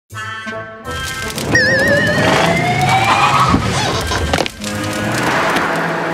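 Cartoon soundtrack: a brief bit of music, then about a second in a noisy sound effect carrying a slowly rising whistle and a short warbling tone, which dips near the middle and carries on as a noisy rush under the music.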